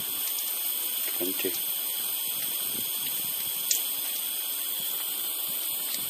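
Live steam injector running and feeding water into a small boiler at about 20 psi, a steady high hiss. It is still feeding even with the fire out and the pressure falling.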